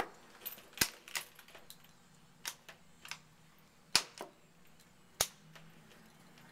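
Push buttons on an old Westinghouse elevator's car panel clicking as they are pressed one after another: about seven sharp clicks at uneven intervals, over a faint steady hum.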